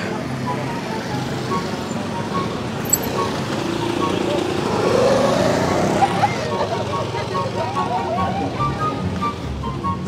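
Street traffic with motorbikes passing close by; one engine rises in pitch and grows louder about four to five seconds in, over a background of crowd chatter.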